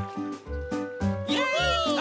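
Upbeat cartoon background music with a bouncy bass line, about two low notes a second under a held melody; cartoon voices cheer "Yay!" a little past one second in.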